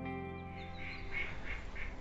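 Background music fading out, then a duck quacking in a quick series of calls, about three a second.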